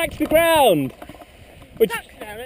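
A person's voice: a short cry falling in pitch in the first second, then a brief vocal sound near the end.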